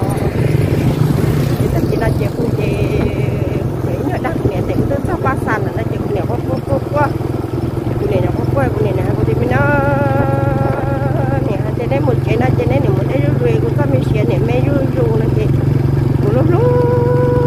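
Small motorcycle engine running steadily as it is ridden, a constant low hum under a woman's talking.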